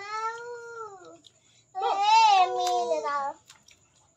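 A child's voice making two drawn-out, wordless high-pitched sounds. The first falls in pitch, and the second starts about two seconds in.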